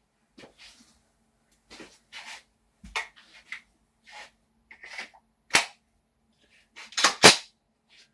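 Metallic clicks and clacks of a Glock pistol in a Roni Mini carbine conversion kit being handled and readied for blank firing. Faint scattered clicks come first, then a sharp clack about five and a half seconds in, and two loud clacks in quick succession near the end.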